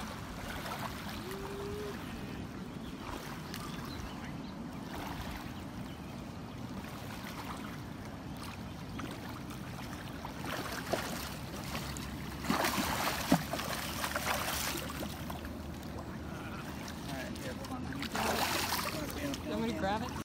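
Indistinct voices over a steady rushing outdoor noise, with two louder noisy stretches in the second half.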